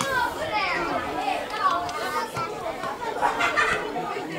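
Overlapping shouts and calls of young footballers and their coach during play, several voices at once with no clear words.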